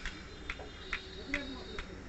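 Faint light metallic clicks, about five at roughly two a second, from the connecting rod of a Hero Honda motorcycle crankshaft being tapped by hand against its crankpin. The knock is the sign of up-and-down play in the rod's big-end bearing.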